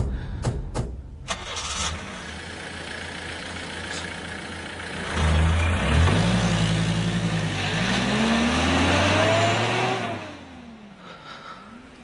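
Three sharp clunks of car doors shutting, then the engine of a Toyota Qualis starting about five seconds in and revving, its pitch rising as the vehicle pulls away, fading out near the end.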